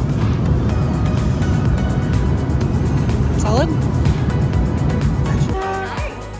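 Steady low rumble of an airliner cabin in flight, with background music over it. The rumble cuts off abruptly shortly before the end.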